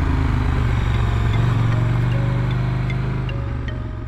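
KTM 1290 Super Duke R's V-twin engine running at low revs as the bike rolls slowly, with background music over it.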